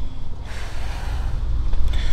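Rubbing and rustling of the camera against clothing and a wall panel in a tight passage, a steady noise that builds about half a second in, over a constant low rumble.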